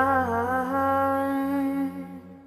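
Pop song mix: a woman's voice holds one long steady note over soft backing, fading away near the end.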